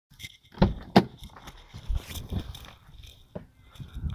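A BMW E46 sedan's driver door being unlatched and opened: two sharp clicks about half a second and a second in, followed by scattered light knocks and rustling as someone climbs out.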